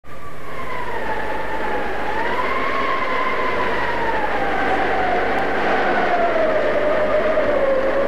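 Howling wind: a steady rush with a whistling tone that wavers and slowly falls in pitch.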